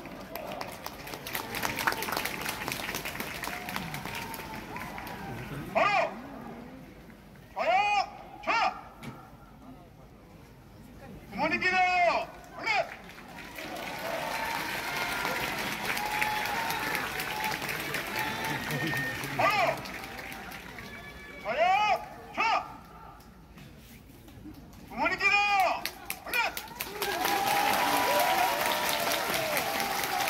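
Loud, drawn-out shouted voice calls ring out about nine times over a large outdoor gathering, each rising and falling in pitch. A steady crowd noise runs between them, swelling in the middle and near the end.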